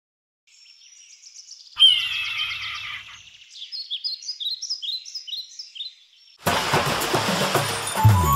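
Birds singing: a run of short, high chirping notes, each falling in pitch, repeated about two a second, with one louder call about two seconds in. Near the end the rush of a sea wave breaking on rocks takes over.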